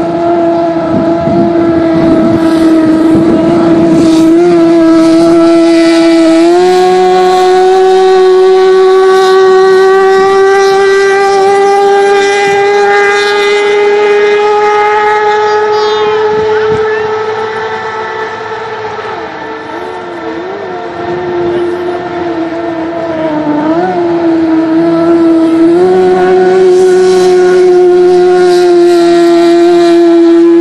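Racing hydroplane engine running at high revs: one loud, sustained engine note. The note steps up in pitch about six seconds in and climbs slowly. It sags and wavers for a few seconds about two-thirds of the way through, then jumps back up near the end as the boat comes past.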